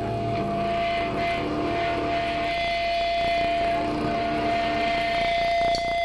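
Live band stage noise: a steady high feedback tone from an electric guitar amplifier held over a droning wash of amp noise, with a rapid run of hits coming in about five seconds in.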